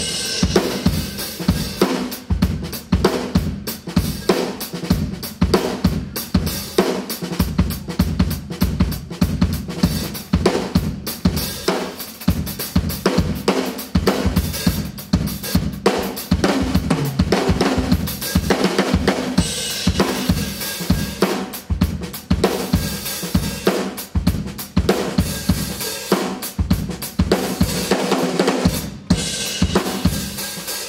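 Drum kit played solo: a driving groove of bass drum, snare and hi-hat with cymbal crashes on Sabian cymbals, dense strikes throughout. The kit comes back in after a brief gap right at the start.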